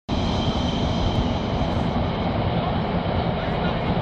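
Wind buffeting the phone's microphone: a loud, steady, rough rumble throughout.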